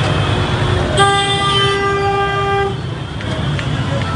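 A vehicle horn blown once in a single held note lasting under two seconds, starting about a second in, over the steady noise of a packed street crowd and motorcycle engines.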